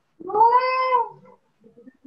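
A single drawn-out call, about a second long, whose pitch rises and then falls, with a few faint scraps of sound after it.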